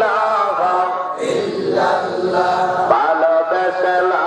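Islamic devotional chant sung in long, held melodic notes.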